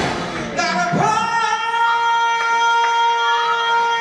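Live soul-gospel band music: a couple of sharp band hits, then the band drops out and a singer holds one long, steady note.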